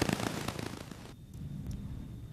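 Crackling, rustling noise made of many small clicks, which cuts off abruptly about a second in and leaves a faint low hum.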